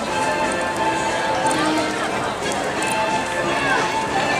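Crowd of people talking while they walk along a busy street, with background music playing under the voices.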